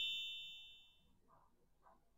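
The tail of a bright, ringing electronic chime, the sound effect of a slide transition, fading out in the first second. Near silence follows.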